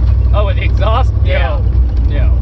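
Steady low rumble of a roofless Lincoln driving along a rough dirt road at night, the open cabin full of road and wind noise. A few indistinct vocal sounds rise over it about midway.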